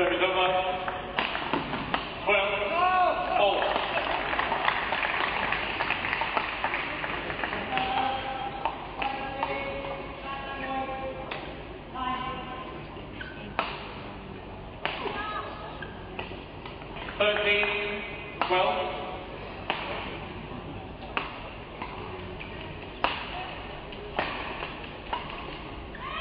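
Badminton rally in a large hall: sharp racket hits on the shuttlecock about once a second through the second half, high squeaks of court shoes on the mat, and crowd voices in the background.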